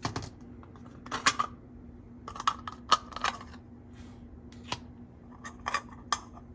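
Small hard plastic toy kitchen pieces clicking and clattering together as they are picked up and handled, in irregular clusters of light taps.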